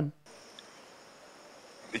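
A faint, steady, high-pitched insect chorus, with no distinct chirps or rhythm.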